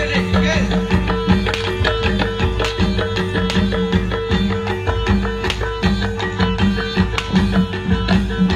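Live Javanese reog/jaranan accompaniment music: a continuous run of quick, short struck notes over sharp drum hits and sustained low tones.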